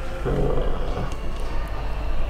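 A low, dense rumble that starts suddenly out of silence, opening the trailer's soundtrack.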